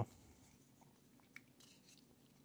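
Almost silent, with a faint click a little past halfway and light rustling of Pokémon trading cards being handled and laid down on a desk mat.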